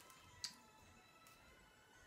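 Near silence, broken by one short, sharp click about half a second in: scissors snipping while trimming rotten orchid roots.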